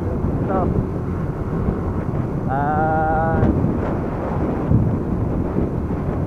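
Wind rushing over the camera microphone on a Bajaj CT100 motorcycle under way, a steady dense rumble with the small single-cylinder engine and road noise buried beneath it.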